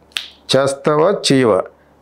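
A man speaking, preceded by a single sharp click just after the start.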